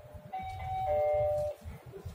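Sigma elevator's chime: a two-note falling ding-dong, a higher note and then a lower one ringing together until both stop about a second and a half in. Under it runs a low steady rumble of the car in motion.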